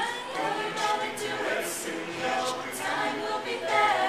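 A mixed-voice a cappella group singing in harmony, several voice parts holding and shifting chords together without instruments.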